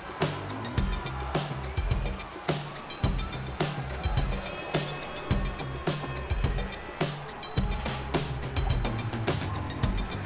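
Background music with a steady beat and a pulsing bass line.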